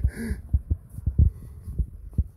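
Footsteps on a dirt path: irregular low thuds as the person holding the camera walks, under a faint low rumble.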